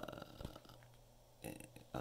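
A man's drawn-out, creaky hesitation "uhh" in the first half second, trailing off. Then a faint, brief rustle of a paper lyric sheet and clear plastic sleeve being handled, about a second and a half in.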